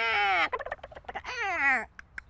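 A woman's voice imitating alien speech with two warbling, bird-like calls that slide downward in pitch. The first is about half a second long at the start, and the second comes near the end, with faint choppy vocal noises between them.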